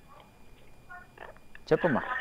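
A low hush, then near the end a single short spoken word whose pitch drops steeply.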